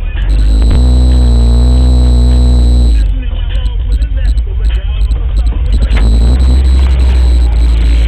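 Old Chevrolet Malibu's engine and exhaust pulling under load while driving, loud. It holds one steady pitch for about two seconds, then runs on as a rougher rumble.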